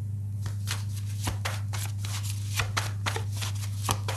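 Tarot cards being shuffled by hand: a quick, irregular run of short card snaps and flicks, over a steady low hum.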